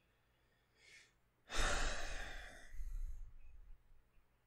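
A man breathes in briefly, then lets out a long, heavy sigh about a second and a half in, lasting about two seconds and trailing off.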